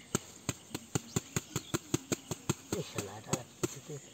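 Rapid, even series of sharp knocks, about four a second, from a bamboo fish trap being tapped and shaken to empty its catch into a plastic bag.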